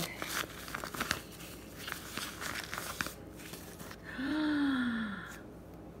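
Tissue paper crinkling and a fabric drawstring pouch rustling as a jade egg is unwrapped, in small scattered crackles. About four seconds in, a woman's drawn-out vocal exclamation lasting about a second, falling in pitch.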